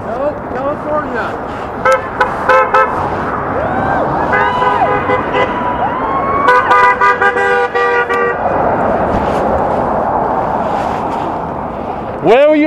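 Car horns honking in traffic: short repeated toots, then longer held blasts from several horns at once, over steady street noise and distant shouting voices.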